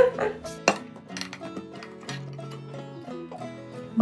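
Background music with a steady melody; in the first second, a few sharp metallic clicks as the lid of a metal paint tin is pried off.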